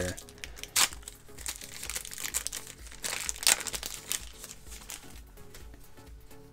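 A 1991 NBA Hoops basketball card pack's foil wrapper being torn open and crinkled by hand, with sharper crackles about a second in and again around three and a half seconds in. Faint background music plays underneath.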